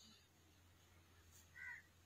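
Near silence with a faint low steady hum; about one and a half seconds in, one brief, faint, high-pitched call.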